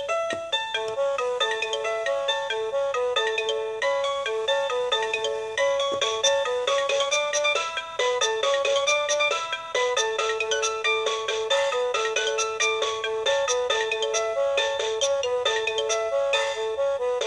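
Children's electronic toy music player playing a synthesized tune of quick, evenly paced notes in a ringtone-like electronic voice.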